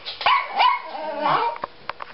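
Chihuahua barking in a quick run of short barks, followed by a few short clicks near the end.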